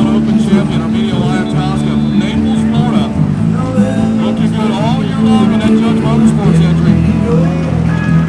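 Racing jet skis' engines running on the course, their pitch rising and falling as they accelerate and turn, mixed with music.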